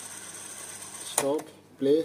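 Cassette deck of a Technics SC-C09S boombox fast-forwarding a tape: a steady mechanical whir of the transport winding the reels. Two brief wavering chirps come through, about a second in and again near the end.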